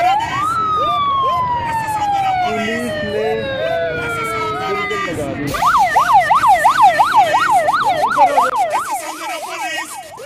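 Police car siren: one long falling wail, then a fast yelp of about three and a half sweeps a second that stops shortly before the end.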